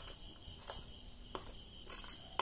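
Faint light clicks of a steel spoon against a stainless-steel idli-steamer plate as cooked filling is scooped out, three times, over a faint steady high-pitched whine.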